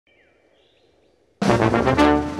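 Faint birdsong, then about one and a half seconds in a brass band with drum kit comes in loudly all at once, playing a polka.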